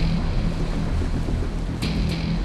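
Trimaran powerboat running at speed over open water: engine drone with rushing water and wind, and a short hiss near the end.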